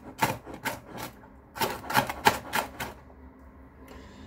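Kitchen knife chopping an onion on a cutting board: a quick, uneven run of knocks that stops about three seconds in.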